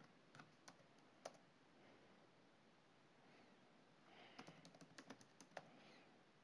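Faint computer keyboard keystrokes: a few scattered clicks in the first second or so, then a quick run of keystrokes about four to five and a half seconds in.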